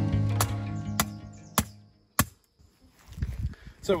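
Acoustic guitar background music fading out, punctuated by sharp knocks about every half second that stop a little over two seconds in.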